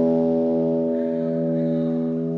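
A live post-rock band's final chord on electric guitars and keyboard ringing out. It is held steady and slowly fading at the close of the song.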